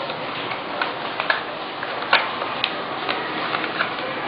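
A sheet of A4 paper being folded and creased by hand against a tabletop: irregular crisp clicks and crackles, the loudest about two seconds in, over a steady hiss.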